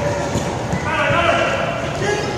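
A basketball bouncing and players' sneakers pounding on a hardwood gym floor in a run of irregular low knocks, with players' voices calling out about a second in.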